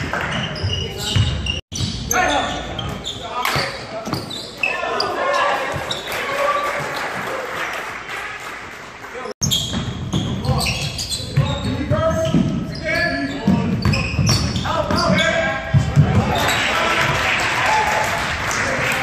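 Basketball game on a gym floor: a ball dribbling and bouncing on hardwood with repeated short thuds, under players' and bench voices calling out. The sound drops out for an instant twice.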